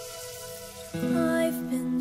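Soft, sustained background music with held chords. About a second in, a louder new chord comes in and a voice begins singing the opening of a song.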